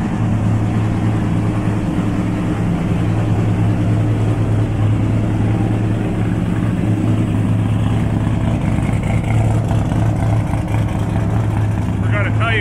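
Twin-turbo LSX V8 drag-car engine idling steadily, a loud, even low hum.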